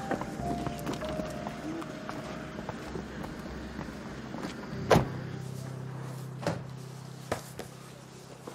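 Background music with car doors shutting: one sharp, loud thunk about five seconds in, then a softer knock about a second and a half later.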